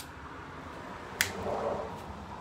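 Plastic fused relay blocks being handled and linked together: a light click at the start and a sharp plastic click a little over a second in, followed by soft handling noise.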